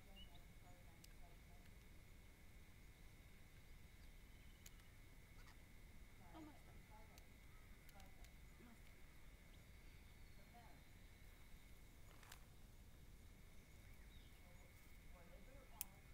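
Near silence: quiet outdoor ambience with a faint steady high tone, scattered faint short sounds, and a few soft clicks, the sharpest near the end.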